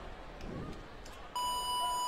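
Electronic start signal: a single steady beep that begins a little past a second in and holds, sounding the start of the heat.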